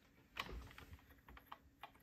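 Faint handling sounds of hands working yarn onto a plastic knitting machine's needles and yarn guide: a few light, scattered clicks of plastic being touched.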